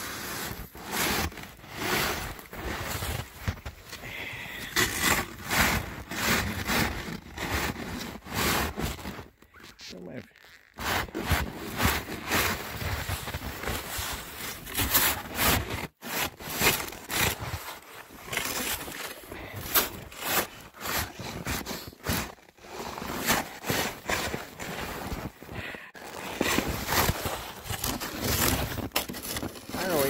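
Plastic snow shovel scraping and pushing through deep snow in repeated, irregular strokes, with boots crunching in the snow.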